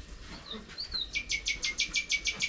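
A small bird calling: two short high whistled glides, then from about a second in a fast, even run of sharp chirps, about seven a second.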